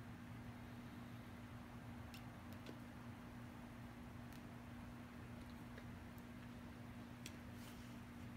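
Faint, soft lip clicks of a cigar being puffed, a few scattered through the stretch, over a steady low electrical hum.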